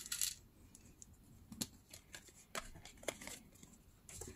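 Faint, scattered small clicks and taps of card tags being picked up and handled on a hard tabletop.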